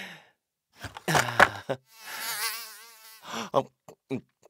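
Cartoon eating sound: a man's voice munching into a hamburger, followed by about a second of wavering, buzzing comic sound effect, then a short 'ah' near the end.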